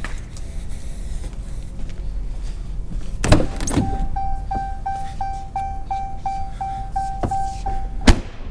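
A 2014 Ram 1500's driver door opening with a loud clunk a little over three seconds in. Then the cabin warning chime for a door open with the ignition on beeps steadily about three times a second, and stops as the door shuts with a sharp thud at the very end.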